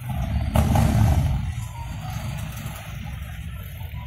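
Police motorcycle engine starting up to pull away: a loud low rumble that comes in suddenly, is loudest about a second in, then settles to a steady rumble.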